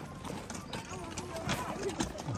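A child's pull wagon rolling over a dirt trail, its wheels and frame giving off irregular clicks and knocks, mixed with footsteps and brief children's voices.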